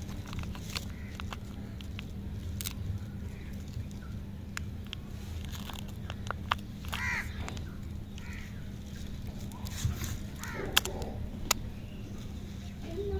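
Paper candy wrapper crinkling and rustling as it is peeled off a stick lollipop, with scattered sharp clicks. Twice, about seven seconds in and again near the end, a harsh call sounds in the background.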